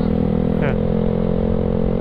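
Yamaha Mio Sporty scooter's small single-cylinder four-stroke engine running steadily under way, heard from the rider's seat.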